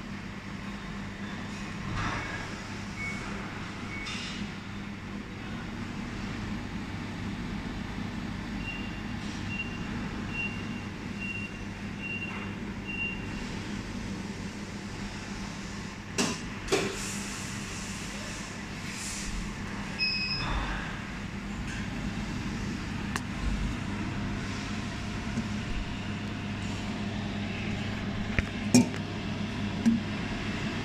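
Desktop laser welding machine running idle while its screen reads 'Waiting for Simmer', a steady hum from its cooling fan and power supply. A run of short, evenly spaced electronic beeps comes about nine to thirteen seconds in, with a few sharp clicks later.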